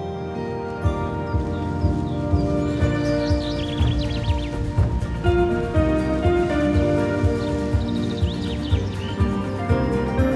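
Instrumental background music: sustained synth-like chords with a steady kick-drum beat that comes in about a second in.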